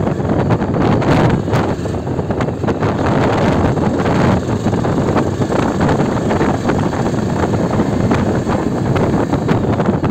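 Wind buffeting the microphone of a camera on a moving motorcycle, with the Yezdi Adventure's single-cylinder engine running underneath at low road speed. The sound is a loud, steady, gusty rush.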